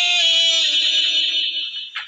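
A singer's voice holding one long note in a song, wavering slightly, then fading away near the end.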